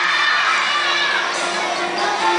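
A crowd of children shouting and cheering together, many voices at once.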